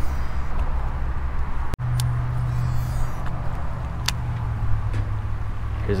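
Steady low rumble of nearby road traffic, broken by a brief dropout just under two seconds in, with a single sharp click about four seconds in.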